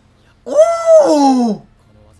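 A man's drawn-out "Ooh!" of amazement, about half a second in and lasting just over a second, rising and then falling in pitch.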